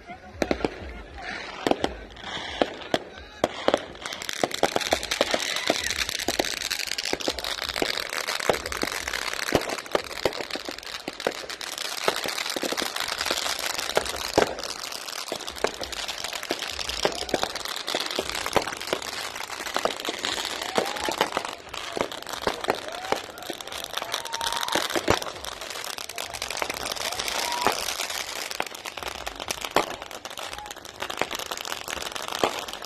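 Diwali firecrackers and aerial fireworks going off in a rapid, irregular run of sharp bangs and pops, with a dense crackle building from about four seconds in.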